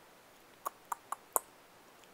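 Four quick clicks of a computer pointing device, about a quarter second apart, as a spreadsheet cell is selected and its fill-colour menu opened.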